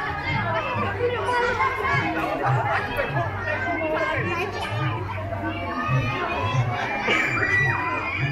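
Roadside crowd chatter: many adults and children talking and calling at once, with music with a heavy bass line playing underneath.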